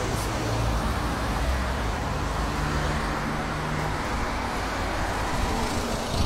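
Steady road traffic noise from vehicles on a nearby street, with a faint low engine hum about two to four seconds in.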